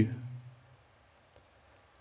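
A man's voice trailing off at the end of a word in the first half-second, then near silence broken by one faint, short click a little over a second in.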